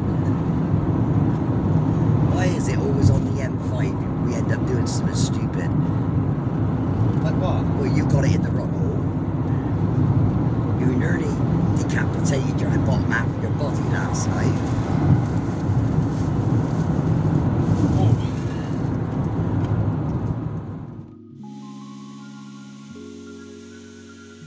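Road and engine noise inside the cab of a moving van, a steady low rumble. About three seconds before the end it cuts off suddenly and music with a slow run of stepped notes takes over.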